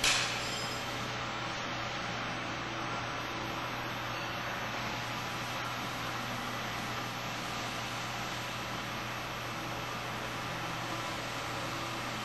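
Steady mechanical hum and whir of a powder feeder's dosing-screw drive running with the hopper's external agitation switched off. The level stays even throughout.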